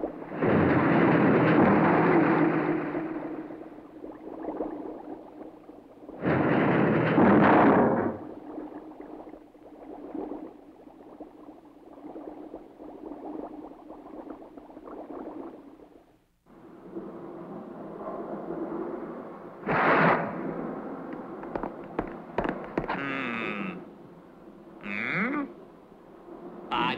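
Cartoon sound effects with no speech. There is a loud rushing noise for the first few seconds and again about six seconds in, quieter noise through the middle, another loud burst about twenty seconds in, and a few short sliding tones near the end.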